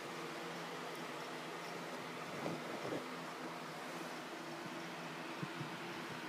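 Faint steady background hum, with a few soft knocks about two and a half, three and five and a half seconds in.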